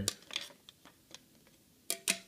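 A few light clicks and taps of clear plastic card sleeves and holders being handled, with a louder click near the end as a plastic holder is set down.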